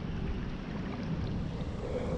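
Steady rush of a shallow, fast-flowing creek, with a low rumble of wind on the microphone.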